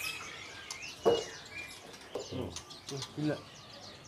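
Several caged songbirds chirping and calling at once, many short high chirps overlapping, with a couple of brief whistled notes about a second in.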